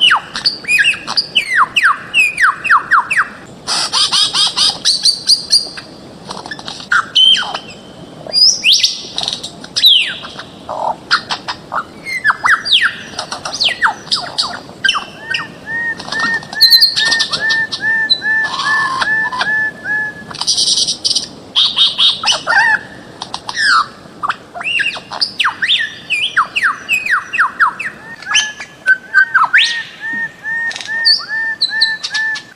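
Bird-of-paradise calls in a dense, overlapping chorus: quick downward-slurred whistles and harsh squawks. About halfway through, a steady run of arched notes starts at about three a second, and it comes back near the end.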